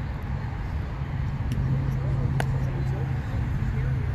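A single sharp crack about two and a half seconds in: a wooden bat hitting the ball. Under it runs a steady low hum with faint voices.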